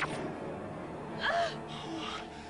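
A person's short gasping 'ah' about a second in, the pitch arching up and back down, over soft background music.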